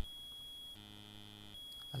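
Faint electrical buzz in the recording, sounding once for under a second near the middle, over a steady high-pitched whine.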